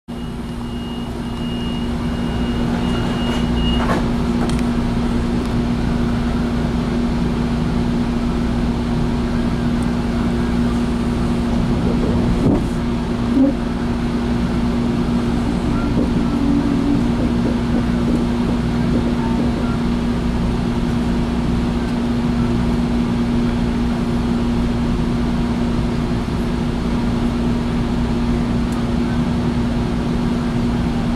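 Steady mechanical hum of a Metrolink commuter train heard from inside a passenger car, with a high steady beep for about the first four seconds and a couple of brief knocks about halfway through.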